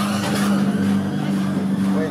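A motor running steadily with an even, low hum that does not change pitch.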